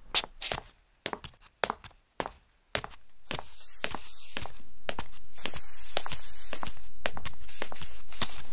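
A quick run of short knocks, then an aerosol spray-paint can spraying: the hiss comes in about three seconds in, swells, and holds steady, as a house is marked with spray paint.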